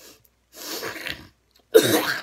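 A girl making two short, rough cough-like vocal sounds, the second louder and more sudden than the first.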